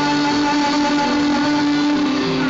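Live music: a singer holds one long, steady note through a microphone, accompanied by acoustic guitar.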